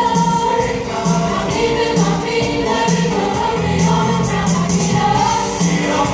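Mixed show choir singing in harmony over accompaniment with a steady beat.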